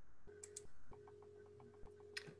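Faint steady electrical hum and tone that drops out briefly twice, with rapid faint ticking and a couple of short clicks.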